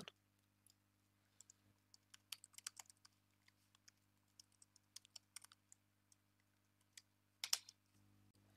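Faint keystrokes on a computer keyboard, irregular clicks in short runs with pauses between, and a couple of louder clicks near the end.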